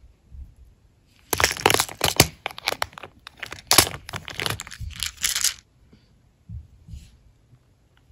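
Clear plastic compartment containers knocking together and the small nail charms inside them rattling as they are handled, a dense run of sharp clicks and clatter starting about a second in and lasting about four seconds.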